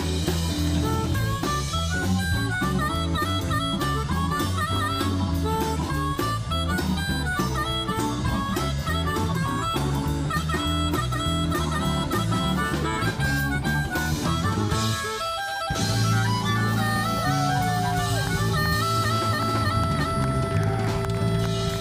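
Blues harmonica cupped against a handheld vocal microphone, playing an amplified solo over a live blues shuffle from electric guitar, bass, keyboards and drums. The bass drops out briefly about fifteen seconds in, and the band comes back in under long held notes.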